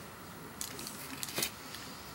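Faint rustle of small plastic-and-foil nail polish strip packets being handled and picked up, with a few light clicks, the sharpest about one and a half seconds in.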